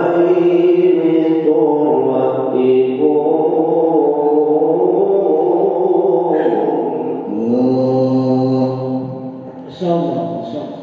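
A man reciting the Qur'an in the melodic, drawn-out tilawah style, holding long, slowly wavering notes. A new phrase begins about seven seconds in.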